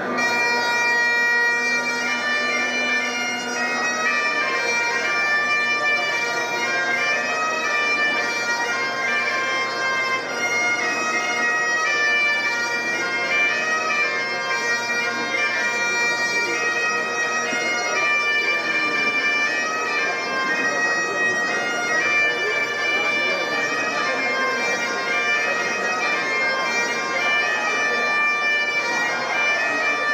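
Bagpipes playing a stepping melody over a steady drone.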